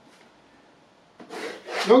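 A short, soft scraping rub about a second in: a pencil and a curved pattern-drafting ruler moving across paper.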